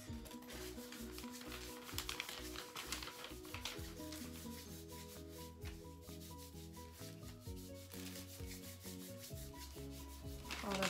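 Hands rubbing a cold wax strip between the palms to warm and soften the wax, a steady run of rubbing strokes, with soft background music underneath.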